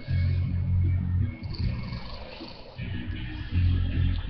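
A man snoring in his sleep: a long low snore at the start and a shorter one near the end.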